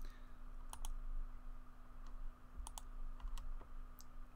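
Computer mouse clicking about half a dozen times, mostly in quick double clicks, over a faint steady hum.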